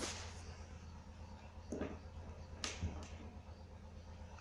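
A low steady hum with a few faint, short clicks and taps, about two seconds in and again just before three seconds.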